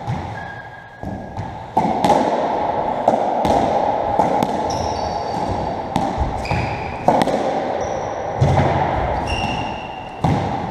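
A squash57 (racketball) rally on a squash court: the ball cracks off rackets and walls in quick succession, each hit echoing in the court. A couple of softer hits come first, then the rally speeds up about two seconds in, with short shoe squeaks on the wooden floor between the hits.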